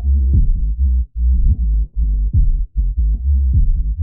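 Dubstep track's low end played on its own: heavy sub-bass and kicks with everything above a few hundred hertz cut away, so it sounds muffled. This is the soloed low band of a multiband compressor while its crossover frequency is being moved, and the snare does not come through.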